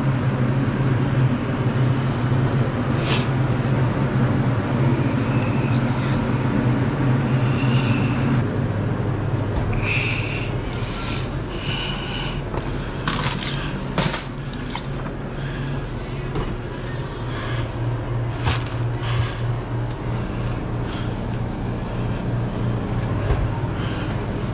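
A machine's steady low hum, with scattered short clicks and knocks from handling steel hotel pans of braised beef on a steel counter.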